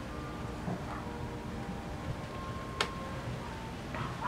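Quiet background noise with a low rumble and a few faint held tones, broken by one sharp click a little under three seconds in.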